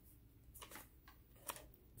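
Near silence with a few faint rustles and clicks of a paper greeting card being handled, the sharpest about one and a half seconds in.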